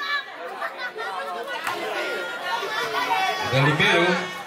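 Crowd of spectators chattering and calling out, many voices overlapping, with one sharp knock about one and a half seconds in and a louder low shout near the end.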